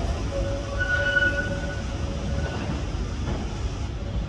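Waterloo & City line 1992-stock tube train pulling away along the track: a steady low rumble of wheels and running gear, with a thin high squeal drawn out for about a second near the start.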